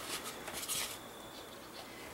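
Quiet handling noise: faint light scuffs and clicks from gloved hands working a dried gourd and a small alcohol-ink dropper bottle, mostly in the first second, then near-still room tone.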